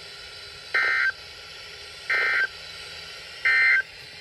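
Three short, identical data-tone bursts about a second and a third apart from a Midland NOAA weather radio's speaker: the two-tone warble of the EAS/SAME end-of-message code, marking the end of the severe thunderstorm watch broadcast.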